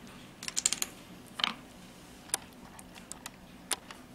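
A few light plastic clicks and taps: a quick cluster about half a second in, then single clicks spaced out. They come from long fingernails and a plastic nail tip on its holder being handled.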